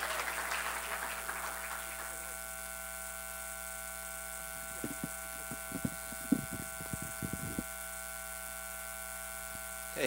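Audience applause dying away over the first couple of seconds. A steady electrical hum and buzz with several fixed tones runs under it and continues, and a few short knocks and clicks come about five to seven seconds in.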